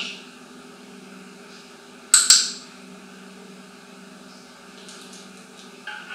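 A handheld training clicker clicks once about two seconds in, a sharp double click of press and release, over a steady low hum. In clicker training this click marks the bird's correct response.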